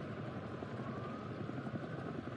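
Steady background ambience of a night street, a faint even hiss like distant traffic, with a thin faint whine drifting slightly in pitch.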